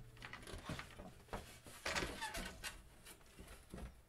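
Faint, scattered clicks and rustles of handling as a stiff painted board is shifted and tilted.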